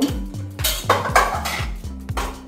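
Clatter of a kitchen utensil against a frying pan, a few short bursts about halfway through, over background music with a steady beat.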